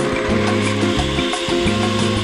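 Countertop blender running, grinding a chunky mix of solid food and drinks, with background music over it.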